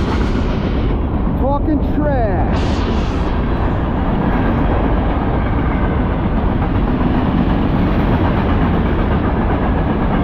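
A freight train of waste-container cars rolling past at close range: a steady, loud rumble and rolling noise of steel wheels on rail.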